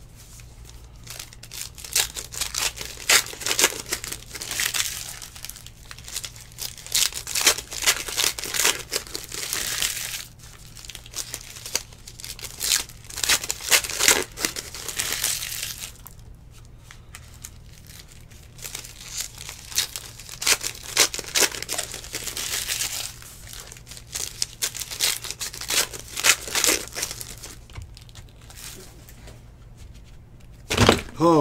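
Crinkling and tearing of trading-card pack wrappers, mixed with the rustle of cardboard cards being handled, in clusters of a few seconds with short lulls between.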